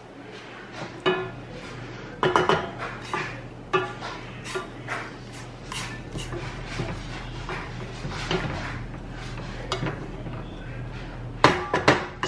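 Wooden spoon stirring oats in a stainless steel saucepan, knocking and scraping against the pan in irregular strokes, some with a brief metallic ring.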